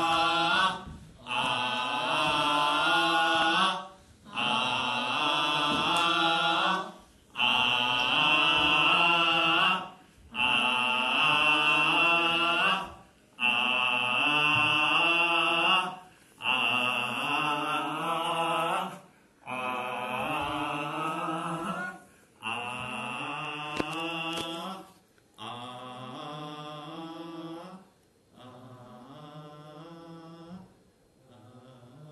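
A group of voices chanting in unison, in long held phrases of about three seconds, each followed by a brief pause for breath. The chant grows quieter over the last few seconds.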